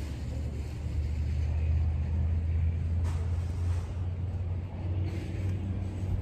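Low, steady engine rumble of a motor vehicle, growing louder for a few seconds in the middle and then easing.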